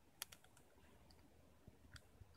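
Near silence, with a few faint small clicks from fountain pen parts being handled and twisted: two about a quarter second in and one near the end.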